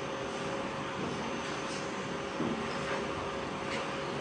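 Steady room background noise: an even hiss with a faint, constant electrical hum.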